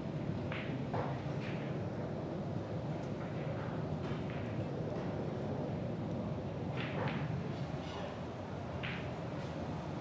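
Steady low hum of a hall's room tone with a few short, faint clicks scattered through it, about a second in and again near 7 and 9 seconds.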